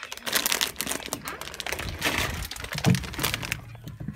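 Crackling, rustling handling noise from a phone's microphone being moved and rubbed about, with a dull thump about three seconds in.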